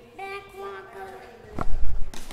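A young child's high voice in two short, drawn-out vocal phrases. About a second and a half in, a loud low thump and rumble takes over.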